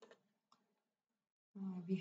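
A pause in a woman's speech: near silence broken by one faint short click about half a second in, then her voice resumes near the end.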